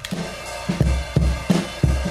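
Classic acoustic drum loop playing back at its original 87 BPM, sliced at its onsets: kick drum thumps and snare hits over a steady wash of cymbals.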